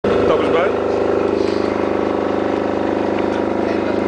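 An engine running steadily nearby, a loud, even drone with a fast regular pulse that holds unchanged throughout.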